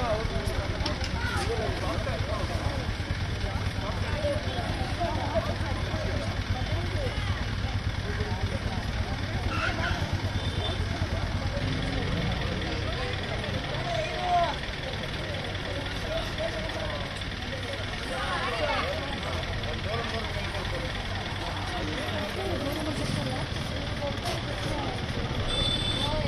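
Scattered voices of several people talking in the background over a steady low rumble of an idling bus engine, with one brief louder sound about 14 seconds in.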